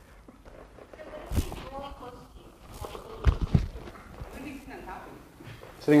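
Three soft thumps, one about a second and a half in and two close together just past three seconds, as bare feet and bodies move on a padded training mat, with faint voices between them.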